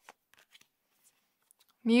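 Tarot cards being handled: a few faint, soft flicks and slides of card stock as cards are drawn from the deck and laid onto the spread.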